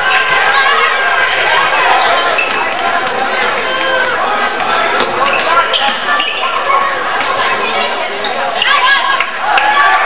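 Basketball bouncing on a hardwood gym floor during a game, with short sharp knocks scattered through, over the steady chatter and calls of spectators and players echoing in the gym.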